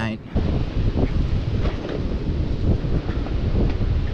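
Wind buffeting the microphone: a loud, rough low rumble that sets in just after the start and carries on throughout.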